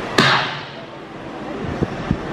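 A single sharp smack of a staged fight punch about a fifth of a second in, with a short echoing tail that dies away.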